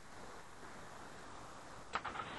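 Faint, steady hiss of room tone and line noise on a webinar recording during a pause, with one short click just before the end.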